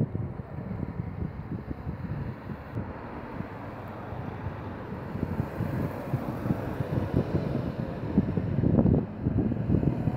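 Citroën 2CV's small air-cooled flat-twin engine running as the car pulls in at low speed, with wind buffeting the microphone; the low rumble grows louder near the end.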